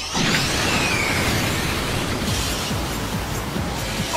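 Anime fight soundtrack: dramatic music mixed with a loud, sudden rushing whoosh effect that starts all at once and holds steadily.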